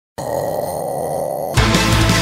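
A man's low, drawn-out vocal sound, then loud heavy-metal music starts suddenly about one and a half seconds in.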